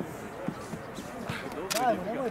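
A football on a grass pitch gives several short dull thuds as a player receives it and runs with it at his feet. The loudest, sharpest thud comes near the end together with players' shouting.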